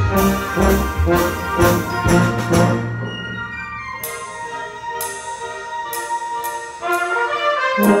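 Concert band playing, brass to the fore, with a tuba close by playing low notes. Rhythmic for the first three seconds, then softer held brass chords over an even light tick about once a second, swelling louder about a second before the end.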